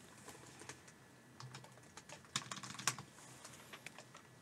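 Quiet studio room with scattered small clicks and taps at the desk, like light typing, bunching into a quick flurry about two and a half seconds in.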